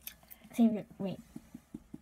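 Mostly speech: a child's voice saying a word or two, with only a few faint short sounds between.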